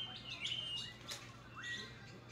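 Birds chirping: a quick series of short, high chirps and rising calls.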